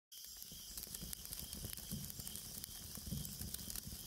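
Faint crackling ambience: a low steady hiss scattered with many small pops and clicks, with a soft low rumble underneath.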